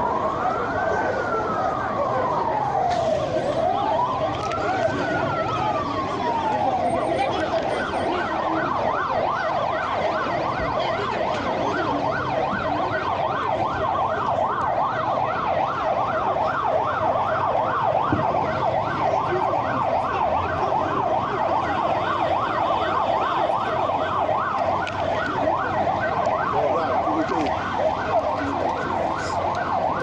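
A vehicle siren: two slow rising-and-falling wails, then about seven seconds in it switches to a fast yelp of roughly three cycles a second that keeps going.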